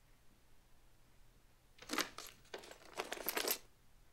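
Loose metal coins clinking and rattling in two short bursts, the second longer and busier, with several sharp clinks near its end.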